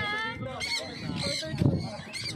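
A flock of free-flying pet parrots calling, many short rising-and-falling calls overlapping one another, with a brief low thud about one and a half seconds in.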